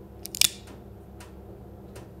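Sharp metallic click-clack of a handgun being cocked about half a second in, followed by a few faint clicks, over a low steady hum.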